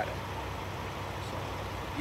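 Steady low hum of an idling semi truck's diesel engine, even and unchanging.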